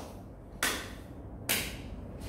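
Two sharp knocks, about a second apart, against quiet room tone.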